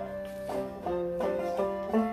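Banjo played live, its plucked notes picked in a quick, even run over sustained held tones.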